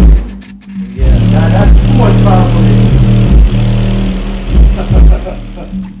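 Bass-heavy music played loud through a Genius Audio N4-12S4 12-inch car subwoofer, with deep sustained bass notes under a heavy kick beat.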